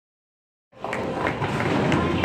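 Silence, then, about three quarters of a second in, bowling alley noise cuts in suddenly: the low rumble of a bowling ball rolling down a wooden lane, with scattered sharp knocks.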